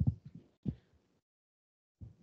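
Low, muffled thumps and rumble that die away within the first second, followed by silence.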